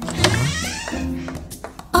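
Cartoon background music with a high squeaky sound effect that starts suddenly about a quarter second in and slides down in pitch over about half a second.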